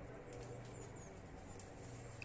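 Quiet outdoor background with a steady low hum, and a few faint, high bird chirps about halfway through.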